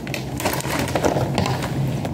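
A cardboard toy box with a plastic window being pulled and torn open by hand: a run of irregular rustling and tearing noises.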